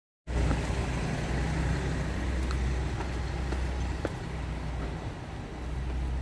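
Steady low outdoor rumble with a few faint taps, starting abruptly a quarter of a second in after silence.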